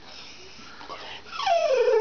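Dog vocalizing on command for a treat: a drawn-out whining howl that starts about two-thirds of the way in and slides down in pitch.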